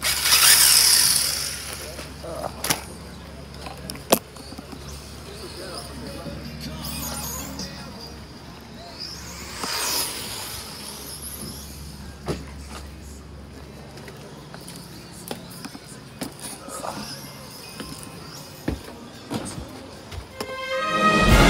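Electric RC buggy motor whining high as a car speeds by on the track, loud in the first couple of seconds and again, rising then falling, about halfway through, with a few sharp clicks between.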